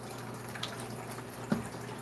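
A person drinking soda from a plastic bottle: faint swallowing and liquid sounds over a steady low hum, with a small click about one and a half seconds in.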